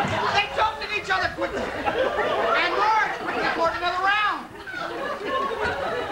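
Indistinct talking, with several voices at once.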